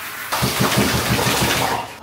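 Water poured from a jug over a dog standing in a bathtub, splashing loudly into the bathwater for about a second and a half while rinsing off shampoo, starting shortly after the beginning.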